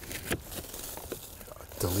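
Faint rustling and crinkling of a woven bulk bag's fabric and loose compost being scooped up by hand, with a few soft clicks.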